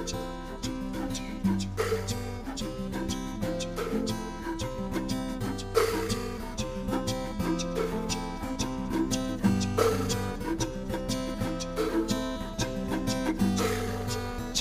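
A recorded Paicî lullaby played back: lively music with a steady beat.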